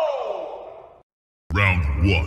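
Game-style announcer voice calling out the start of a round, fading away with an echo over about a second. A half-second of dead silence follows, then a loud announcer call with heavy bass begins.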